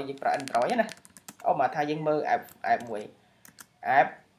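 Keystrokes on a computer keyboard as a short word is typed into a search box: a quick run of key clicks about half a second in and a few more near the end, under a person talking.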